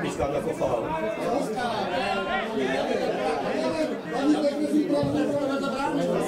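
Several people talking at once nearby, an indistinct chatter of voices.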